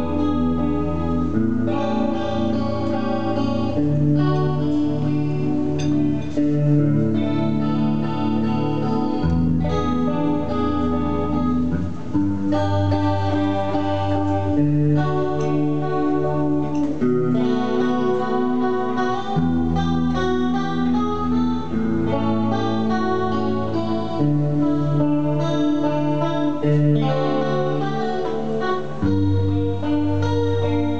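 Solo guitar playing an instrumental guarania: a plucked melody over changing bass notes.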